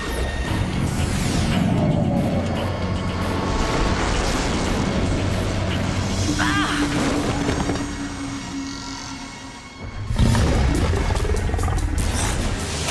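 Cartoon action soundtrack: dramatic score mixed with sci-fi sound effects, sweeping whooshes and a robot transformation. A sudden loud crash comes about ten seconds in.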